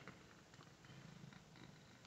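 A domestic cat purring faintly, a low even rumble.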